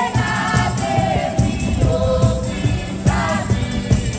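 A group of street buskers singing together in several voices, over an acoustic guitar and a cajon keeping a steady beat.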